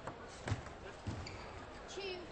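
Table tennis ball struck back and forth in a rally: three sharp knocks of the celluloid ball on bats and table, about half a second apart, the middle one loudest.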